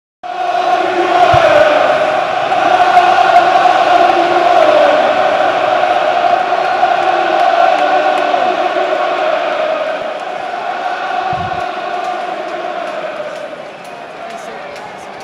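Football crowd singing a chant together on a sustained, steady pitch, easing down in level over the last few seconds.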